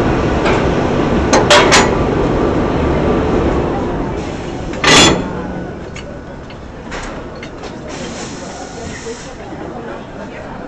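Railway coupling gear and brake air at a locomotive during shunting, with a steady rumble of running equipment that fades after a few seconds. Three sharp metallic clinks come about a second and a half in, then a short, loud burst of escaping air about halfway through, and a fainter hiss of air near the end.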